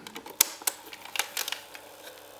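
Piano-key transport buttons of a Sony TC-61 cassette recorder being pressed down for record and play, engaging record mode, which swings the permanent-magnet erase head out against the tape. A sharp mechanical click comes about half a second in, followed by several lighter clicks and rattles of the plastic mechanism.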